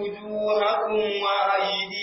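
A man's voice reciting Qur'anic verses in Arabic in a melodic, drawn-out chant, holding long notes with brief breaks between phrases.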